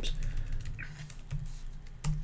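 Computer keyboard keystrokes, a quick run of separate clicks as a short command is typed and corrected, over a low steady hum.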